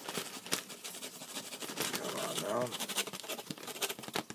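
Hot dog chunks sliding off a paper plate and dropping into a plastic zip-top bag: scattered soft patters and crinkles of the bag throughout.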